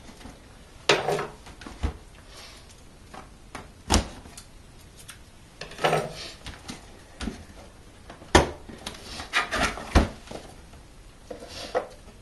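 A cardboard camcorder box being handled and opened: the inner box slid out of its printed sleeve and set down, with rustles and scrapes of card and several sharp knocks of the box against the surface.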